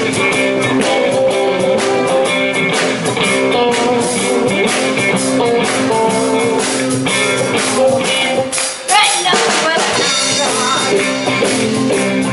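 Live blues band playing electric guitars over a drum kit, with a woman singing. The music dips briefly about eight and a half seconds in, then carries on.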